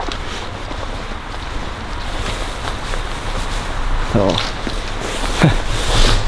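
Wind noise on the microphone, a steady rushing with a low rumble, together with the rustle of footsteps and clothing while walking outdoors. A brief vocal sound comes about four seconds in.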